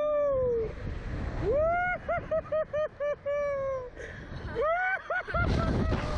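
Riders on a SlingShot reverse-bungee ride yelling long warbling 'whoa-oh-oh-oh' cries that rise, shake rapidly and fall away, over and over. Between the cries, gusts of wind rush over the microphone as the seat swings through the air.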